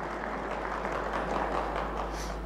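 Audience applauding: a dense, even patter of many hands clapping.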